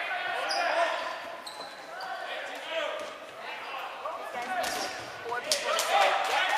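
Dodgeballs bouncing on a hardwood gym floor, with a few sharp bounces near the end, among players' voices.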